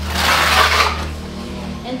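A steel trowel scraping wet cement plaster on a concrete-block wall: a burst of scraping in the first second, loudest about half a second in, over a steady low hum.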